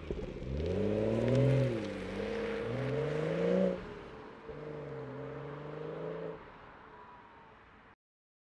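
BMW 340i's B58 turbocharged 3.0-litre inline-six accelerating away, revs climbing and dropping at two upshifts, then holding steadier as the car pulls into the distance and fades out.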